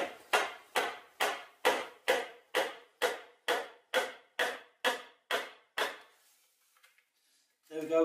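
A log off-cut used as a mallet knocking a green-wood rung into a drilled hole in a stool leg, wood striking wood: about fourteen even blows, a little over two a second, stopping about six seconds in.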